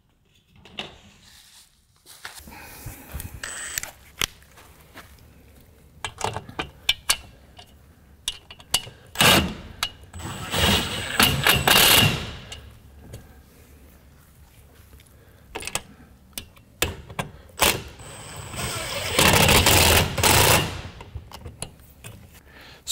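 Makita cordless impact driver run twice, for about three seconds near the middle and again for about two seconds near the end, fastening the folding arms into the metal wall bracket. Clicks and knocks of the metal clothesline arms being handled come in between.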